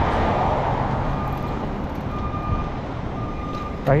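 Road traffic on a wide city street, a steady rush of passing vehicles that is louder at first and eases off over the first couple of seconds.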